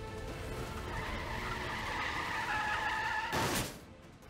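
A car's tyres screeching in a skid over background music, the screech growing from about a second in and ending in a short, harsh burst of noise near the end.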